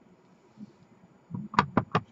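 Clear acrylic stamp block tapped repeatedly onto an ink pad to ink the stamp: a quick run of sharp knocks, about five a second, starting just over a second in.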